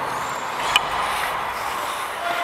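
Steady scraping hiss of a referee's skate blades gliding across the ice, mixed with air rushing past the helmet-mounted microphone, with one short click about three quarters of a second in.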